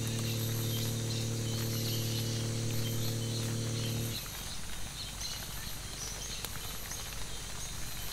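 Boat outboard motor running with a steady low hum, cutting off abruptly about four seconds in. Afterwards there is a quieter outdoor background with faint high insect chirping.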